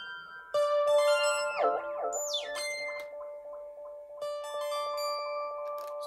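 Two Yamaha Reface CS synthesizers layered and played together: plucky, bell-like notes over held tones, with a quick falling pitch sweep about two seconds in.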